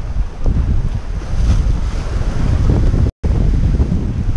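Wind buffeting the microphone in heavy low gusts, over waves washing against shoreline rocks. The sound cuts out completely for an instant about three seconds in.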